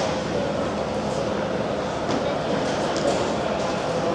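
Steady din of a large, busy exhibition hall: indistinct crowd chatter over a constant rumble.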